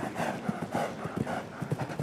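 A show-jumping horse cantering on grass turf, its hooves landing in a run of dull, regular thuds as it approaches a fence.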